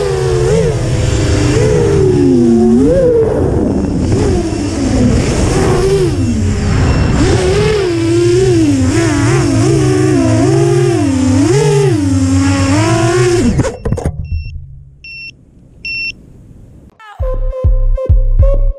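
Brushless motors and propellers of a 7-inch FPV quadcopter (T-Motor F40 Pro 1600kv) whining, the pitch rising and falling constantly with the throttle; the sound cuts off suddenly about 14 seconds in. A few short beeps follow, and music begins near the end.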